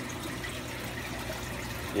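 Steady trickling and bubbling of water circulating in a running aquarium.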